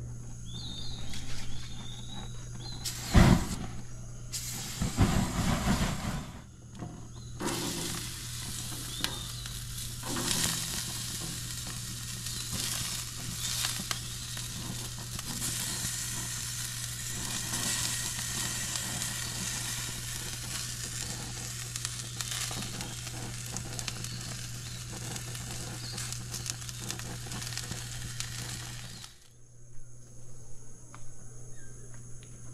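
Strips of bell pepper and onion sizzling on a perforated grill pan over a gas grill: a steady crackling hiss that cuts off suddenly just before the end. In the first few seconds there are a sharp knock and short bursts of noise as the food goes on.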